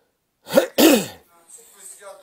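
A man clearing his throat twice in quick succession, two short harsh bursts about half a second in, followed by faint speech.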